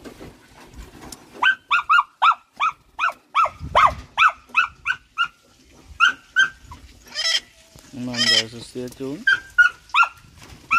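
A rapid run of short, sharp animal calls, two to three a second for about five seconds, then a single longer, higher call and a low drawn-out sound near the end.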